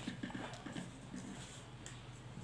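Faint handling noise: a few soft, irregular taps and rustles as a red felt-tip marker is picked up over the paper.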